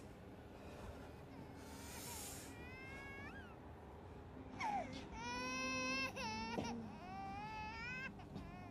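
Infant crying: a few short, rising whimpers about three seconds in, then long, loud wailing cries from about halfway through.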